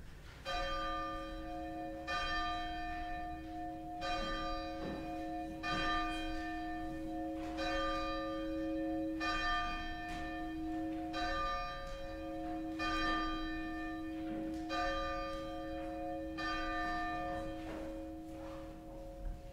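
A single church bell tolling, struck about ten times at an even pace of roughly one stroke every two seconds, each stroke ringing on under the next.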